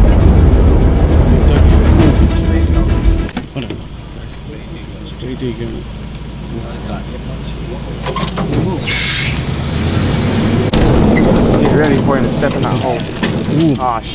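Open hunting vehicle's engine and ride rumbling loudly, cutting off abruptly about three seconds in. What follows is much quieter: faint voices, and a short hiss about nine seconds in.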